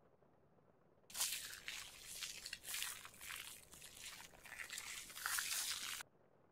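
Straight razor scraping through a lathered beard: a run of crackly scraping strokes that starts abruptly about a second in and cuts off suddenly at the end.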